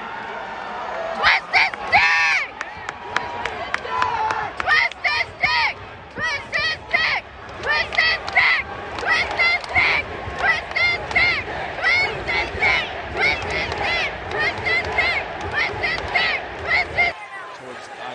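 A person shouting a chant close to the microphone, short shouted syllables repeated in steady groups over and over, over the noise of a large arena crowd. It cuts off abruptly near the end.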